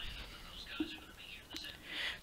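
A man's voice murmuring faintly under his breath, in a pause between spoken sentences.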